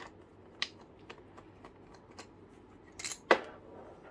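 Quarter-inch nut driver working the small bolts out of a Racor fuel filter bowl: a string of light metal clicks about twice a second, then a sharp metallic clink a little after three seconds in.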